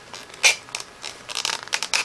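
Leather being drawn by hand through a wooden strap cutter, its blade slicing the leather in a sharp scrape about half a second in, then a quick run of short rasping, catching strokes. The blade is dull and due for replacing.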